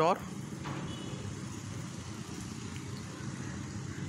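A steady low hum of background noise with no distinct clicks or knocks.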